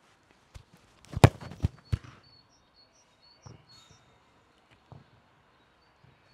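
A football struck hard in a shot: one sharp, loud thud about a second in, followed quickly by two softer knocks.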